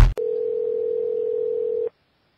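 A loud burst of electronic music cuts off at the very start. It is followed by one steady telephone ringing tone on the caller's line, nearly two seconds long, which stops sharply as the call is about to be answered.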